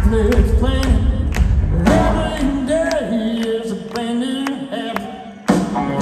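Live rock band: a male lead singer over electric guitar, bass and drums. A little past halfway the bass and drums drop out and the voice and guitar carry on alone, growing quieter, until the full band comes back in suddenly near the end.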